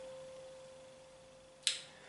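A single piano note, the high C that ends a C Phrygian scale, dying away as one steady pure tone. There is a brief sharp hiss near the end.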